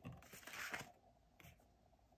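Faint rustle and light clicks of tarot cards being handled, with a short soft swish about half a second in.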